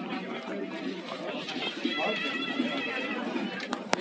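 Overlapping chatter of several people's voices in the street, with a sharp click just before the end.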